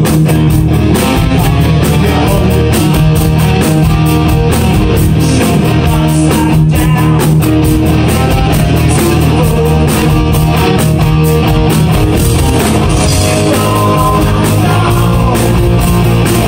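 Live rock band playing loudly: electric guitar over a steady drumbeat and bass.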